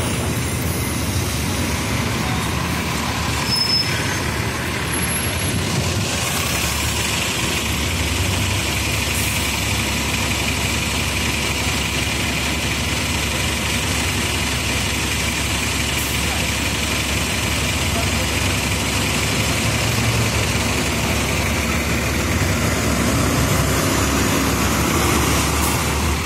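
Diesel engines of double-decker buses running at a roadside stop, with steady, loud street traffic noise as a KMB Volvo B9TL double-decker arrives and pulls in.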